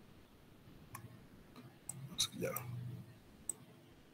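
A few scattered, sharp computer-mouse clicks as pages of a PDF are flipped back, with a short low vocal hum a little past halfway.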